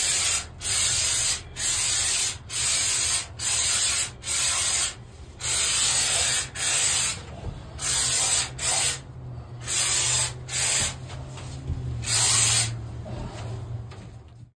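Two-component spray foam gun hissing in short trigger bursts, roughly one a second and spaced more widely toward the end, as foam insulation is sprayed into wall cavities.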